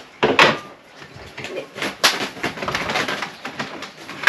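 Knocks and clinks of containers and bottles being set down inside an open refrigerator: one loud knock just after the start, then a run of lighter clicks and taps in the second half.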